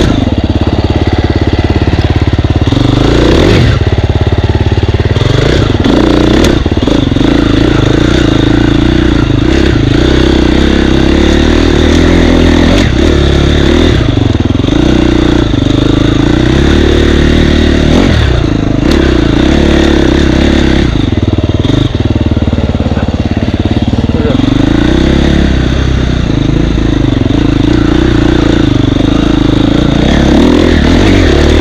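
Husqvarna dirt bike engine running throughout as it is ridden over rough single track, the revs rising and falling with the throttle. Occasional sharp knocks and clatter from the bike hitting rocks and roots.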